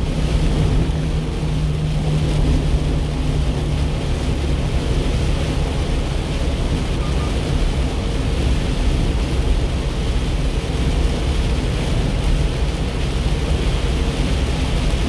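Steady road noise inside a 1-ton truck cab on a rain-soaked highway: a low engine drone under the rushing hiss of tyres running through water and rain on the body.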